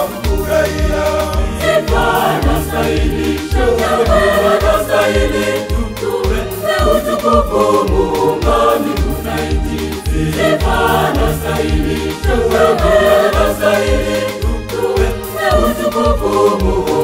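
Church choir singing a Swahili gospel song over a backing track with a steady, even bass beat.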